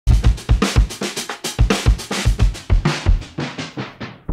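Intro music: a fast drum-kit beat of kick and snare hits, growing duller toward the end.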